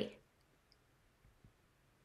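The end of a woman's spoken question fades out right at the start, followed by near silence (room tone) with two faint clicks, about a second apart.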